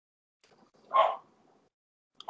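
A dog barks once, briefly, about a second in.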